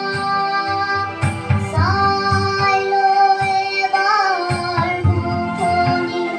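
A young girl singing a song into a microphone, holding long notes that glide between pitches.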